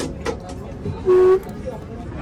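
A car horn gives one short toot, a single steady note lasting about a quarter second, about a second in, over a steady hum of street traffic. Light clicks are heard near the start.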